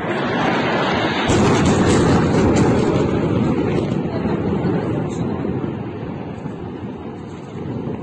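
A large explosion: a loud roar builds, a sharper blast comes about a second in, and a long rumble then fades slowly over several seconds.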